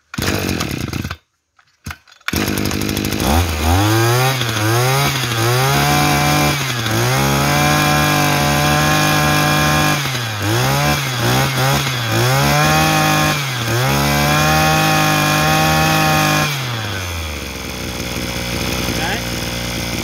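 Maruyama 26 cc two-stroke brush cutter engine pull-started: two short cord pulls, then the engine catches. It is revved up and down in a series of throttle blips and held at high revs twice, then drops back to a steady idle near the end.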